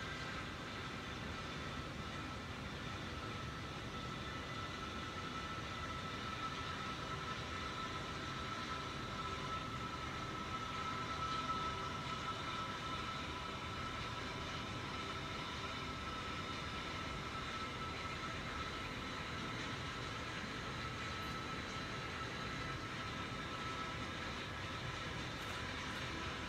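Steady background hum and hiss with a faint, even high whine, unchanging throughout and with no distinct knocks or footsteps standing out.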